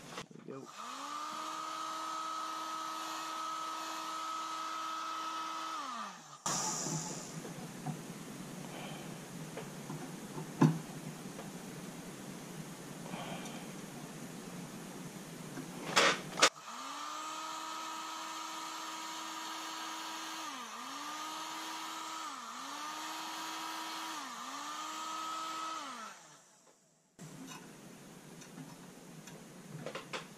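Electric heat gun's fan motor running: it spins up about half a second in, runs steady for about six seconds and winds down. After a quieter stretch of handling noise with a sharp click, it runs again for about ten seconds, its pitch dipping briefly three times before it winds down.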